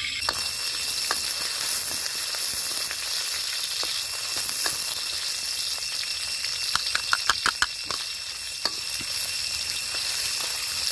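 Shallots, garlic, chilies and lemongrass sizzling in hot oil in a steel wok, with a metal ladle clinking against the wok as it stirs; a quick run of about five taps comes about seven seconds in.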